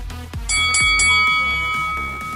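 Interval-timer bell: three quick strikes about half a second in, then ringing on with several clear tones. It marks the end of the rest and the start of the next work interval. Underneath, electronic dance music with a kick drum about twice a second.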